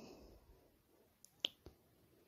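Near silence broken by three short, sharp clicks about a second and a half in, the middle one the loudest.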